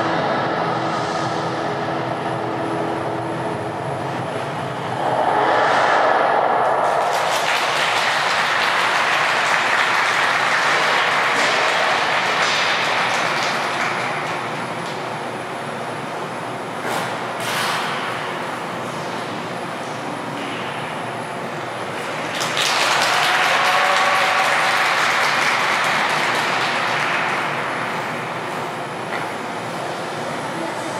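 Figure skating program music ending in the first few seconds, then a rink audience applauding and cheering steadily, with louder swells of cheering about five seconds in and again about twenty-three seconds in.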